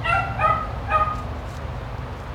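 A dog barking three times in quick succession, short high-pitched barks about half a second apart.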